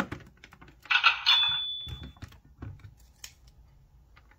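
Plastic toy cash register: a key clicks, then about a second later the register's speaker plays a loud cash-register sound effect, a noisy burst with a high ringing tone that is held for about a second. A few light plastic clicks follow.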